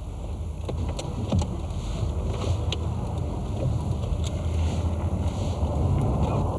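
A car driving along at about 60 km/h: steady engine, tyre and wind noise, growing gradually louder, with a few faint ticks in the first three seconds.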